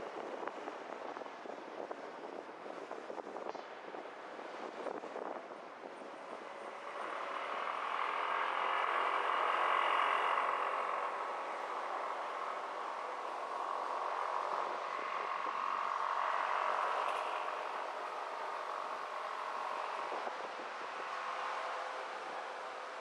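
Car on a city street: road and wind noise while moving, then a steadier hum of engine and passing traffic as it stands at a crossing, swelling twice in the middle.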